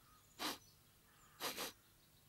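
A man sniffing at a saucepan of cooking food: one sniff, then a quick double sniff, as he catches an odd smell.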